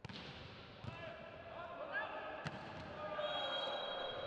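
A volleyball rally in a gym: the ball is struck with sharp slaps, about a second in and again about two and a half seconds in, over shouting from players and crowd. A little after three seconds a long steady high whistle, the referee's whistle ending the rally.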